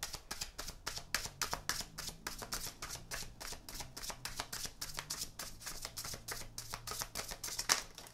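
A tarot deck being shuffled by hand: a rapid run of soft card clicks and riffles, about six a second, with a louder snap near the end.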